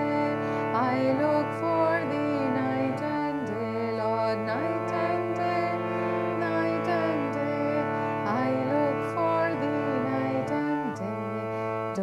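A woman singing a slow devotional chant, her voice gliding and bending between notes over a steady instrumental drone of held chords that shift pitch every few seconds.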